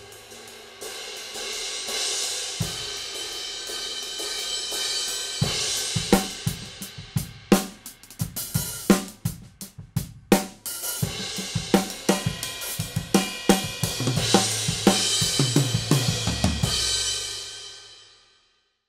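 A four-piece drum kit with Zildjian cymbals, played and heard through a spaced pair of beyerdynamic MC 930 cardioid condenser overhead microphones: cymbals and hi-hat ring over snare, tom and kick drum hits. In the middle the cymbal wash thins into a run of separate sharp drum strokes, then the cymbals come back and ring out near the end.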